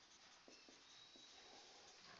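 Faint strokes of a marker writing on a whiteboard, with a few light ticks as the tip touches the board.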